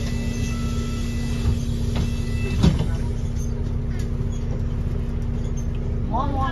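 Interior of a New Routemaster diesel-electric hybrid bus running: a steady low rumble with a constant hum, a faint high whine that stops about halfway through, and a single knock just before the middle.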